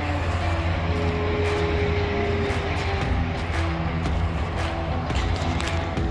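A 2021 Chevy Tahoe PPV's V8 running at idle with its emergency lights on, a steady low hum, with soft background music over it.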